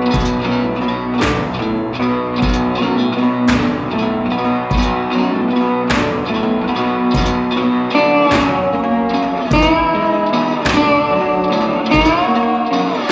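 Instrumental blues intro on slide guitar: plucked notes that bend and glide in pitch, most in the second half, over a slow steady beat with a low thump about every two and a half seconds.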